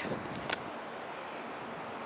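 Steady outdoor background noise, an even rush with no distinct engine note, and one brief click about half a second in.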